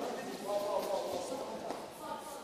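Faint voices in the background with light footsteps on a wooden floor.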